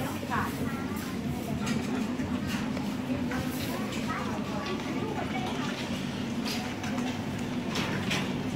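Busy street market ambience: scattered voices of people talking nearby over a steady low hum, with occasional short clatters and knocks.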